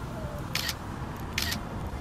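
Camera shutter clicks, two in quick succession about a second apart, as photos are taken, over a low rumble of wind on the microphone.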